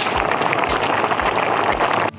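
Mussel jjamppong broth boiling hard in a cast-iron skillet on a wood stove: a loud, steady bubbling hiss with soft low thumps about twice a second.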